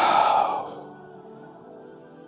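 A sharp breathy exhale, a loud rush of air lasting under a second and fading out, over soft ambient background music.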